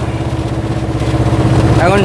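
Engine of a small goods truck running at a steady low drone with a fast even pulse, heard from inside the cab while driving.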